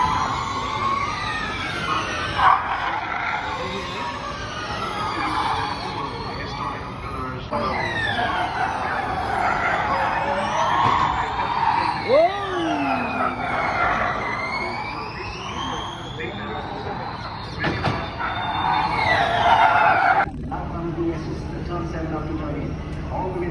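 Formula E electric race cars passing at speed: a high-pitched electric drivetrain whine that slides down and up in pitch as each car goes by, with several cars overlapping. The sound breaks off abruptly near the end.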